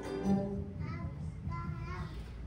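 Choir with keyboard accompaniment finishing a song: a held sung note ends about half a second in, followed by a couple of faint short vocal phrases.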